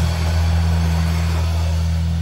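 Live rock band holding a sustained low chord, ringing out from the bass and guitar amplifiers as a steady low drone with a noisy wash above it.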